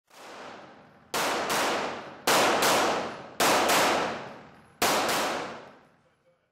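Semi-automatic pistol shots echoing in an indoor range: three quick pairs about a third of a second apart, then a single shot near the end. Each report rings off the walls for about a second.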